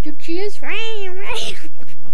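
A young child's high voice talking and giggling. Near the middle comes one long drawn-out note that rises and then falls in pitch.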